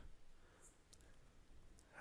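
Near silence: room tone with a few faint, short ticks of a ballpoint pen against paper.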